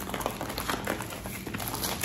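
Packaging being handled: a run of small irregular rustles and clicks as a cardboard product box is picked up and turned in the hands.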